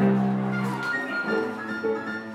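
Small live ensemble of piano, flute and cello playing: a strong low held note for about the first second, then higher steady held tones over it.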